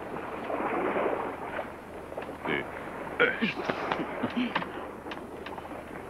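Steady wind and sea noise on a small open boat. From about two seconds in it is joined by a run of sharp crackles and clicks, with a few brief squeaky tones among them.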